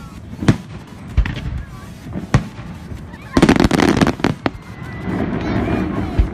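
Aerial fireworks shells bursting: single sharp bangs about a second apart, then a loud, dense stretch of rapid crackling a little past halfway, and another bang just after it.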